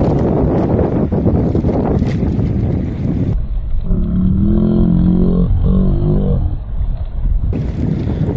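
Wind buffeting the microphone on a small outrigger boat running over choppy sea, a dense low rumble. About three seconds in it gives way for some four seconds to a muffled, wavering pitched sound, then the wind noise comes back.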